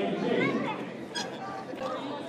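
Crowd chatter: many voices of skaters and spectators talking at once across a large hall, with a short click about a second in.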